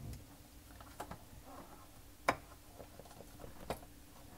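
Three sharp plastic clicks, the loudest a little past halfway, as a dishwasher's lower spray arm is lifted and worked onto its center hub.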